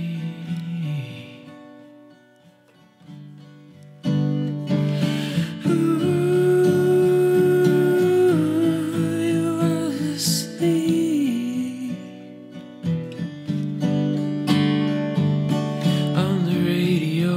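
Steel-string acoustic guitar: a strummed chord rings out and dies away over the first few seconds, then strumming starts again about four seconds in. A wordless hummed vocal melody with sliding pitch carries on over the renewed strumming.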